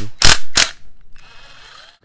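Cordless power driver loosening the cylinder-head fasteners of a Yamaha 125Z two-stroke engine: three short, loud rattling bursts in the first second, then only a faint hiss.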